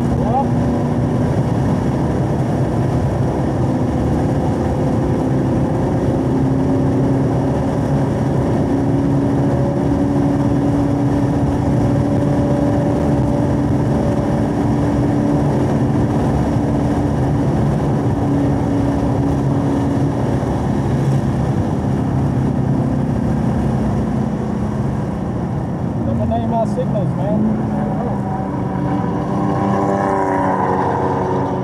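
Chevrolet Camaro SS 1LE's 6.2-litre V8 heard from inside the cabin, pulling steadily at part throttle in fourth gear with road and wind noise, the revs creeping up. Near the end the revs fall as the car slows, then rise again briefly.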